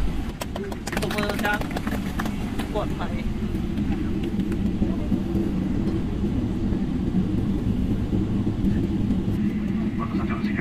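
Airliner cabin noise on the runway: a steady, loud low rumble of jet engines and airframe heard from inside the cabin. Brief voices come in during the first few seconds.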